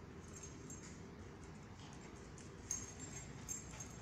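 Dogs scuffling in play on a hard concrete floor, faint: scattered short clicks and light jingles, with a cluster of them in the last second and a half.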